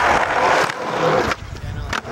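Skateboard wheels rolling over rough concrete, with people's voices underneath; the rolling drops away suddenly about a second and a half in.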